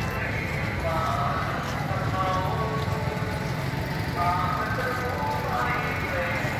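Voices of schoolchildren talking as they cross the road, over a steady low rumble.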